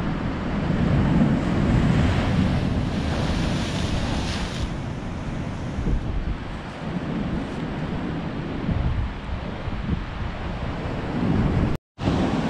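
Storm-driven surf breaking on rocks and washing over a concrete slipway, a continuous rush that swells and eases with each wave, with wind on the microphone. The sound drops out for an instant near the end.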